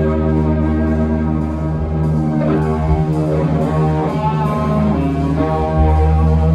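Live drone-metal band: electric guitars and bass holding long, slow, heavily sustained chords over sparse drums and cymbals. The chord shifts about halfway through, and a deep bass note swells back in near the end.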